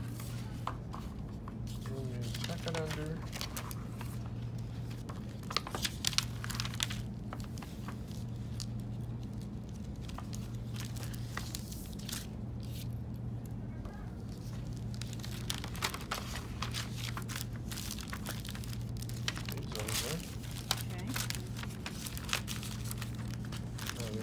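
Sheets of paper being handled, folded and creased around a book on a table, rustling and crinkling in irregular bursts with a few sharper crackles about six seconds in. A steady low hum runs underneath.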